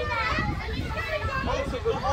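Several children's voices chattering and calling over one another, high-pitched and with no clear words, over a low steady rumble.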